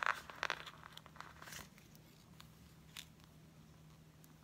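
A sticker and the paper pages of a spiral-bound planner being handled and pressed down by hand: crinkling and rustling for the first second and a half, then a few faint ticks.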